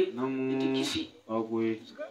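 A man's voice chanting into a microphone on long held notes: one sustained note for most of the first second, a brief break, then a shorter held note.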